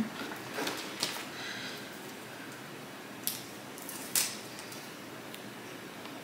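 Light handling sounds of Command picture-hanging strips being pressed onto the back of a wooden picture frame on a table: a few soft rustles and clicks in the first second, then two sharp taps a little after three and four seconds in, over a faint steady hiss.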